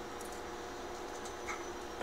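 Quiet steady room tone with a faint electrical hum in a small room, and one faint tick about one and a half seconds in.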